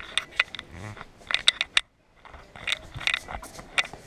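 Irregular sharp clicks, taps and knocks, some in quick clusters, with a brief drop to silence about halfway through.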